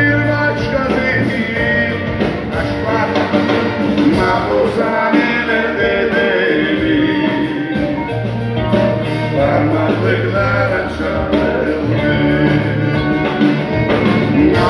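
Live band music from a drum kit, electric guitar and violin, with a man's voice singing over it.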